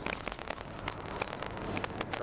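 Steady road and engine noise inside a moving car's cabin, with irregular crackling clicks throughout.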